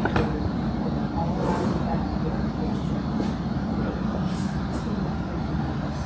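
Indistinct chatter of several people in a room over a steady low rumble, with a sharp click right at the start.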